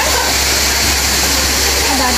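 A loud, steady hiss with a bright high band runs through, with faint voices of people talking in the distance.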